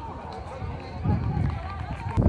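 Indistinct distant voices of players and onlookers calling out across an open pitch, over a low rumble that grows louder about halfway through.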